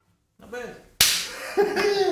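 A short voice sound, then a single sharp hand slap about a second in, the loudest moment, followed by a man's voice calling out.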